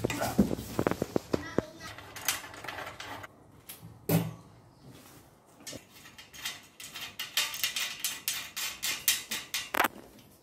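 Clinks and knocks of metal and plastic parts as an overlock sewing machine's thread stand is taken apart by hand. In the second half comes a fast run of clicks, about four a second, as its pole is twisted loose.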